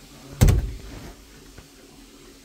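A single loud thump about half a second in, dying away over a moment with a low rumble.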